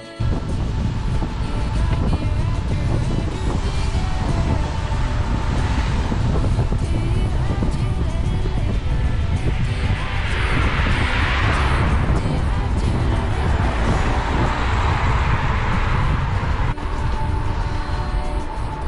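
Wind buffeting the microphone of a camera on a moving bicycle, a steady low rumble with road hiss. A car passes with a swell of tyre hiss about ten seconds in, and music plays faintly underneath.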